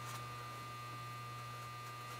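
Steady low electrical hum with a faint, thin high tone above it: room tone, with no other sound standing out.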